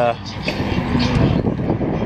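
A man's voice talking, in fragments, over steady outdoor street noise.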